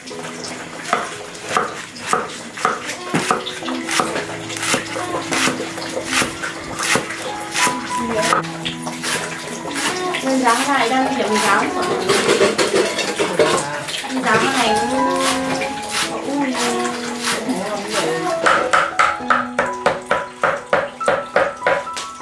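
A steel cleaver chopping leaves on a wooden chopping board in quick repeated strokes, a few per second, coming faster near the end. Background music plays throughout.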